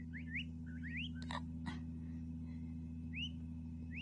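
Newborn peachicks peeping: short upward-sliding chirps, several in quick succession in the first second and a half, then a few scattered ones.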